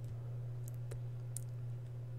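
A stylus tapping on a tablet while handwriting: a few faint, short clicks over a steady low hum.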